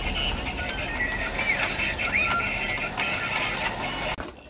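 Battery-powered plastic penguin race track toy running, its motorised stair lift giving a steady plastic clatter and ratcheting clicks, with the toy's electronic tune playing.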